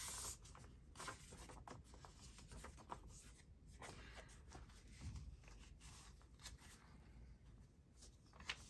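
Faint rustling and light handling of paper: a sheet of printed book page being moved and laid down onto a paper notebook, with small scattered rustles and clicks.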